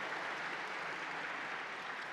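Audience applauding, a steady patter of many hands that slowly tails off.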